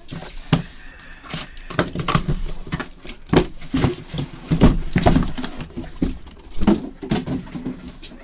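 Cardboard shipping case being handled and opened, with irregular knocks, rubs and scrapes of cardboard as a sealed hobby box is slid out of it.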